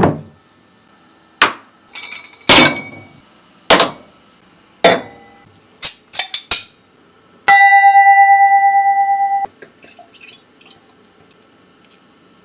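Sharp knocks and clinks of a heavy bowl and glass bottles being handled, about one a second. Around six seconds in comes a quick cluster of clinks as a cleaver pries a beer bottle cap off. Then a steady ringing tone with a fast wobble lasts about two seconds and cuts off suddenly.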